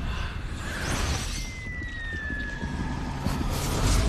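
Dark title-card sound effects: a steady low rumble under a hiss, with one thin high tone gliding slowly downward through the middle, then a noisy whoosh swelling near the end.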